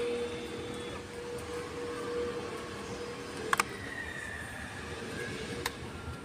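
Small electric motor of an RC model submarine whining at a steady pitch; after a sharp click about halfway in, a higher whine sets in and slowly falls in pitch, with another click near the end.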